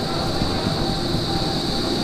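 Steady running noise of an open-sided shuttle cart rolling along, with a low rumble and a steady high-pitched tone over it.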